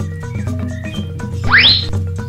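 Light background music with steady low notes, and near the end a quick rising whistle-like glide, the loudest sound.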